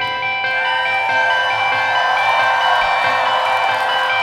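Live indie rock song in a quiet break: the drums and bass drop out and electric guitars ring on in long, overlapping held notes at a steady level.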